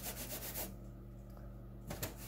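A quick run of rubbing strokes from craft materials being handled on a tabletop. One spell comes right at the start and another near the end.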